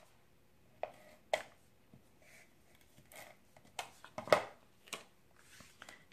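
A few soft, scattered taps and clicks of cardstock being handled and pressed on a craft mat, the loudest a little past four seconds in.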